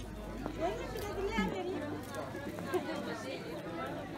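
Chatter of several people talking at once in the background, a crowd of shoppers and stallholders with no single voice standing out.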